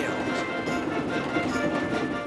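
Background music over the running sound of a fast steam locomotive, its wheels beating on the rails.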